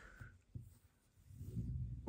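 A pool ball on a billiard table: a faint knock about half a second in as it strikes the far cushion, then a low rolling rumble on the cloth that grows as the ball comes back.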